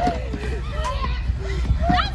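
Several children shouting and squealing with excitement in short, pitch-bending calls, over a steady low rumble.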